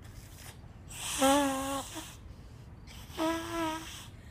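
Hand whistle blown into cupped hands: two steady breathy notes, each just under a second, about two seconds apart, the second a little higher in pitch.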